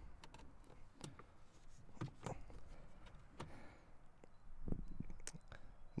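Plastic steering-column trim on a Volvo S80 being worked loose by hand, with scattered faint clicks and knocks as its clips pop free. The loudest cluster of knocks comes about five seconds in.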